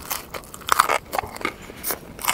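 Close-miked biting and chewing into a slice of thick-crust pepperoni pizza: a quick run of crisp, crackly crunches from the crust.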